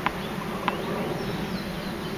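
A tennis ball bounced twice on a hard court before a serve: two sharp taps about two-thirds of a second apart, over a steady background hum.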